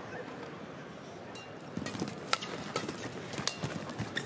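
Badminton rally: rackets striking the shuttlecock in a quick exchange, sharp cracks about half a second apart, the loudest in the second half, over a steady hum of arena crowd noise.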